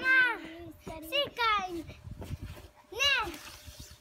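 A young child's voice calling out three times in short, high cries that rise and fall in pitch.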